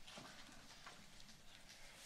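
Near silence: room tone with a few faint, scattered clicks and taps.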